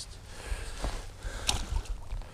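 Wind rumbling on the microphone, with a small splash about one and a half seconds in as a small pike is dropped back into the river.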